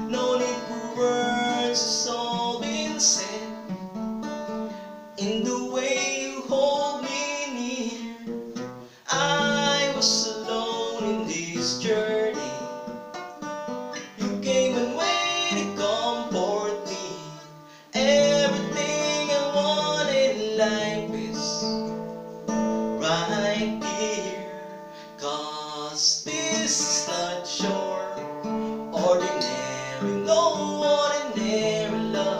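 A man singing a slow ballad while strumming an acoustic guitar, the voice and guitar running on together with short breaks between phrases.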